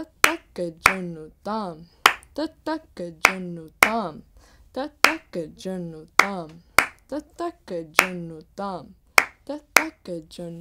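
Konnakol recitation: a voice chanting short rhythmic drum syllables in a steady pulse, while sharp hand claps, about one a second with lighter taps between, keep the tala cycle.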